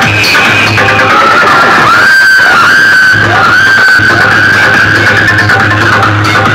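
Electronic dance music played very loud through a tall stack of horn loudspeakers, with a steady bass line and a high lead tone that dips and rises about a third of the way in.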